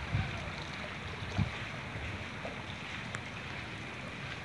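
Fast-flowing muddy floodwater rushing through a flooded street: a steady wash of noise, with a brief low bump about a second and a half in.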